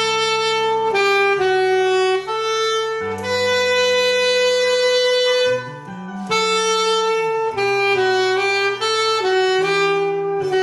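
Alto saxophone playing a slow praise-song melody over a backing accompaniment. The notes are mostly held, with one long sustained note held for about two and a half seconds in the middle and a brief breath break just after it.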